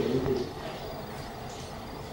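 A bird calling over steady low room noise.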